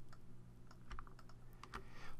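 Faint, scattered clicks of a computer mouse and keyboard over a low, steady hum.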